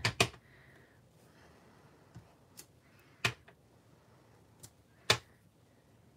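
Clear acrylic stamp block tapping on an ink pad and pressing onto cardstock on a tabletop: a handful of sharp, irregularly spaced taps, the loudest about three and five seconds in.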